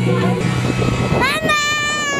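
Background music cuts out early on. A little past the middle, a young child lets out a long, high-pitched squeal that rises slightly and then slowly falls in pitch.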